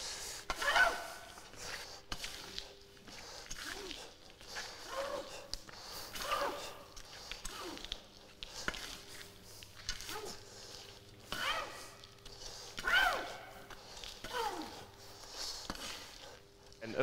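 Shovel scraping and scooping through a pile of damp sawdust and soybean hulls on a plastic sheet over a concrete floor, stroke after stroke every second or two, with shuffling footsteps.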